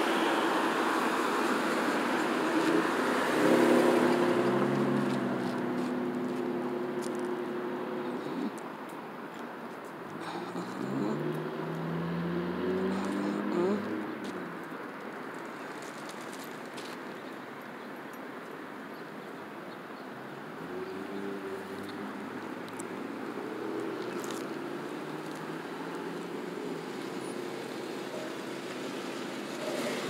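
Cars driving past on a busy road, engine and tyre noise swelling and fading with each one. The loudest passes come about four seconds in and again about eleven seconds in, with a fainter one a little after twenty seconds.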